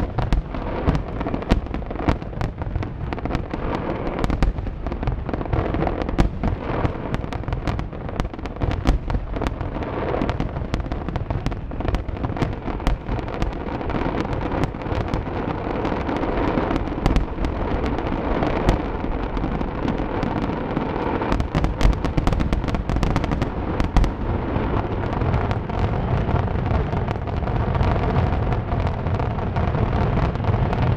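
Castillo aerial fireworks display in its closing barrage: shell bursts and crackle follow one another without a break, so the bangs merge into one continuous din.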